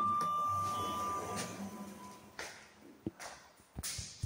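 Orona passenger lift's arrival chime: a clear electronic tone that steps down to a slightly lower note about a second in and fades out within two seconds. A couple of soft knocks follow near the end.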